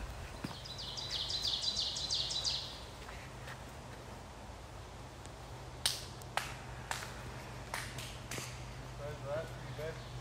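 A songbird singing a fast trill of high, quickly repeated notes for about two seconds. Later come several sharp cracks about half a second apart, from footsteps snapping twigs on a dirt forest trail.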